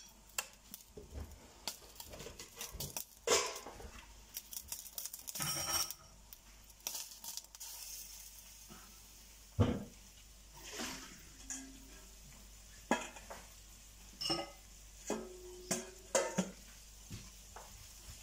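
Scattered clatters and knocks of a metal cooking pot and kitchen utensils, the loudest knock about ten seconds in, over a light sizzle from a frying pan of sliced onion and cabbage. Near the end a wooden spatula stirs the vegetables in the pan.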